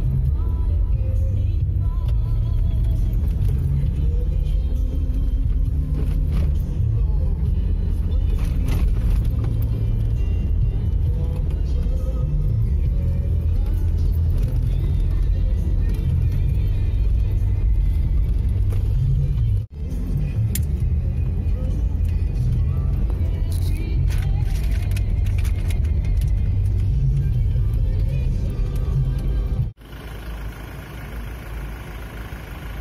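A car driving along a road, heard from inside: a steady low road-and-engine rumble with music playing over it. The sound cuts out abruptly for an instant about two-thirds of the way through.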